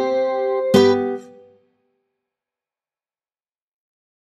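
Acoustic guitar closing the song: a chord rings on, then a final strummed chord about three-quarters of a second in rings out and dies away within a second, leaving complete silence.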